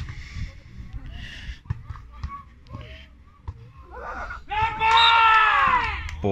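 A person's loud, high-pitched, drawn-out shout during a beach volleyball rally, rising and falling in pitch and lasting about a second and a half near the end. Before it, a quieter stretch with a few short sharp knocks.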